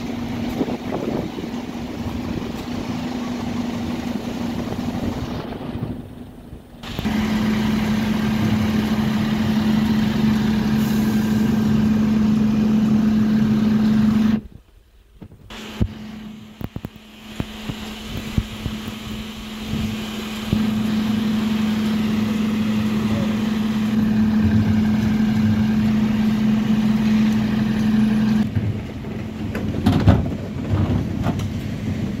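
Dennis Eagle Olympus Elite bin lorry running at a standstill with a steady hum from its engine and hydraulics. The hum dips and cuts out briefly about six seconds in and again about fifteen seconds in.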